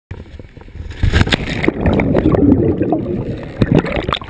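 Water churning and bubbling against an action camera's housing as it goes in at the sea surface, with many small clicks, louder from about a second in. Before that, wind on the microphone.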